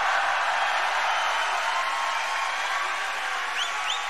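Large concert crowd cheering and applauding at the end of a song, a steady wash of noise that slowly fades, with two short rising whistles near the end.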